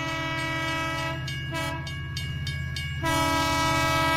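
Train horn sounding a steady chord over the low rumble and clatter of a moving train. The horn breaks off briefly a few times, then comes back louder about three seconds in.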